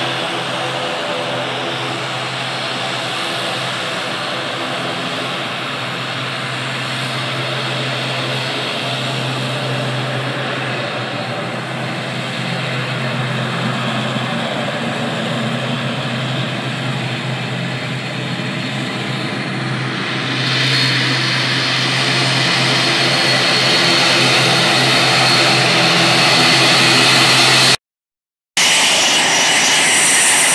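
Twin-engine ATR turboprop airliner in Wings Air livery taxiing, a steady engine drone with a low hum. It grows louder and brighter about two-thirds of the way in.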